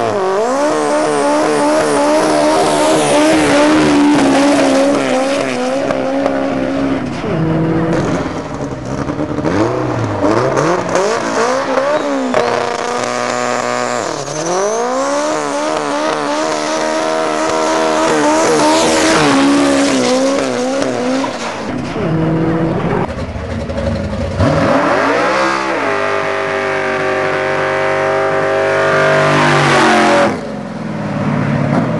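Drag cars on full throttle, led by a high-horsepower Nissan SR20 four-cylinder drag car: the engines rev hard, with the pitch climbing and dropping several times as they run up through the gears, and tyres squeal. About 25 seconds in the revs climb sharply and are held high.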